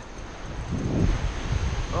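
Wind on the microphone, with small waves breaking on the beach.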